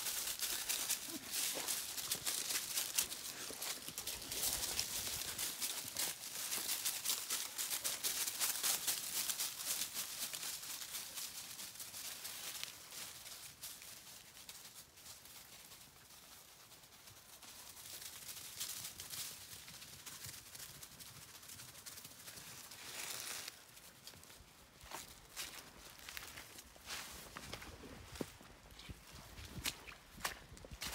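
Footsteps crunching and rustling through dry fallen leaves on the forest floor. They come quickly and thickly for about the first twelve seconds, then become sparser and fainter.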